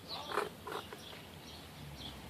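Plastic action-figure parts creaking and clicking a few times, faintly, as a piece is pushed into place, mostly in the first second.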